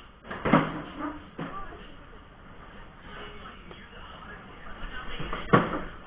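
Two sharp knocks about five seconds apart, the second the loudest, with a fainter knock between them, over faint voices.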